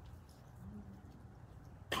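A pause in speech with faint low room noise and a faint murmur, ending with a sudden sharp rush of sound into the microphone as a voice says "Right."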